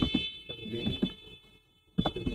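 A steady high-pitched electronic tone, buzzer- or alarm-like and made of several pitches at once, sounds over lower broken sounds and stops shortly before the end.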